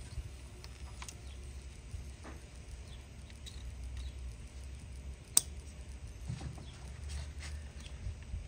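Plastic wiring connectors and harness being handled by gloved hands: light rustling and small ticks over a low steady hum, with one sharp click about five seconds in as a connector snaps onto a fuel injector plug.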